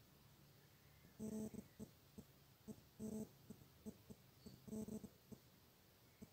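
A faint animal whine, three short calls about a second and a half apart, with soft clicks between them.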